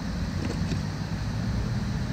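Steady low noise of wind buffeting the microphone of a chest-mounted action camera, with a couple of faint ticks about half a second in.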